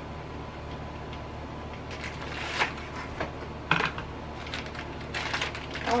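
Packaging of a small 4-inch paint roller being handled and pulled open: a series of short crackles and clicks starting about two seconds in, over a low steady hum.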